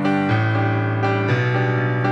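Piano playing sustained chords, with a new chord struck about a third of a second in and another a little after a second in.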